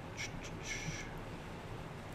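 Quiet room tone with a steady low hum, broken by two faint, brief high squeaks, the second a little longer, in the first half.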